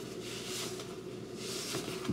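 Rustling of a stretchy fabric chest-piece garment as it is pulled on over the body, in two soft swishes.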